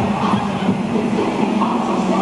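Steady, echoing din of a crowded indoor pool, with water churned and splashed by many people exercising in it, over a constant low hum.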